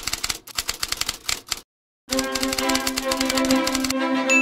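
Typewriter key-clacking sound effect in a rapid run that stops dead for a moment a little before halfway. The clacking then resumes as music with sustained string notes comes in under it.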